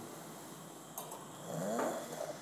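Quiet room with a short click about a second in, then a soft, snore-like breath near the end.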